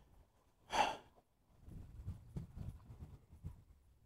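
A person's single short sigh about a second in, followed by faint scattered knocks and rustling of handling.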